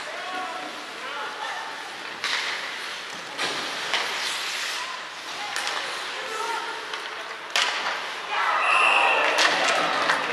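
Ice hockey play in an arena: several sharp knocks of sticks, puck or boards ring out in the rink. The noise grows louder and busier near the end.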